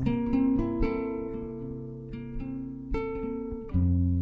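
Slow solo acoustic guitar playing an instrumental passage, picked notes and chords ringing out and fading, with a stronger low bass note struck near the end.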